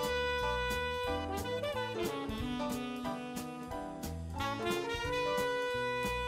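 Saxophone playing a jazz solo over bass and drums, holding one long note near the start and another about four and a half seconds in.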